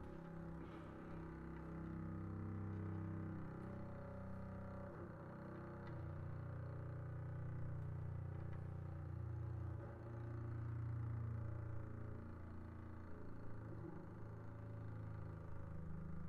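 Double bass playing quiet, long bowed low notes in a contemporary chamber piece, the pitches shifting about six and ten seconds in.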